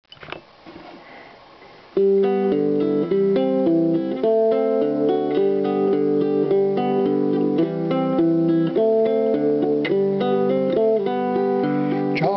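Nylon-string acoustic guitar fingerpicked, a melody of single plucked notes over bass notes, starting about two seconds in after a quiet moment. It is the instrumental introduction before the singing of a Civil War song.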